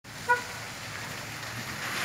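A car's tyres hissing on a wet, muddy dirt road, the noise swelling slightly toward the end as it approaches. A single short high chirp sounds about a third of a second in.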